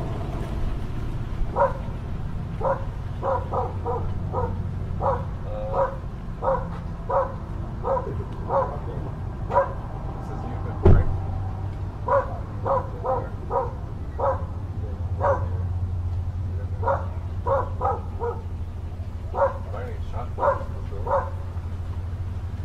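A dog barking over and over in runs of short barks, with brief pauses between runs, over a steady low hum. A single sharp thump about halfway through.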